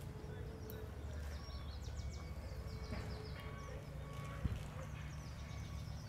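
Small birds chirping in quick runs of falling high notes over a steady low background rumble, with one sharp click a little past the middle.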